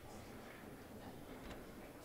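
Quiet billiards-hall room tone with a low hum, and a single faint click about one and a half seconds in.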